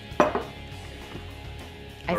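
A single short knock just after the start, over faint steady background music.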